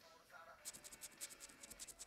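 A coin scraping the coating off a scratch card. It goes in quick, even back-and-forth strokes, several a second, starting about half a second in, and it is faint.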